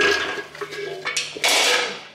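Two bursts of clattering and scraping from hard parts being handled: a short one at the start and a longer one about a second in.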